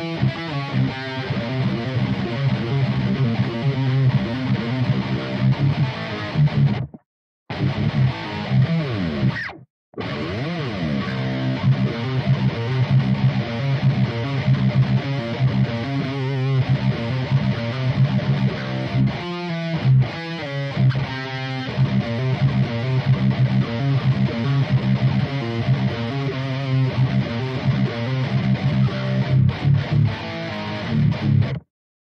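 Distorted electric guitar tuned to drop C, playing a fast metalcore riff of palm-muted chugs on the open low string broken by hammered-on notes higher up the neck. The sound cuts out dead twice, briefly, about seven and ten seconds in.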